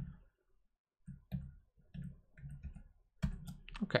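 Computer keyboard keys being tapped, shift and arrow keys selecting lines of code. About a second in, a run of short clicks begins, several a second, with a few louder taps near the end.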